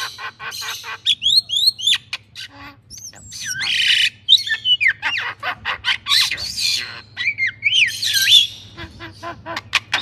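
Two crested mynas calling together: a busy string of sharp clicks, short whistled glides and harsh squawks.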